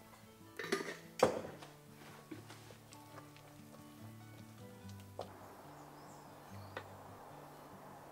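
Soft background music, with a few knocks of a wooden spoon against a stainless-steel saucepan as porridge is stirred. The loudest knock comes a little over a second in.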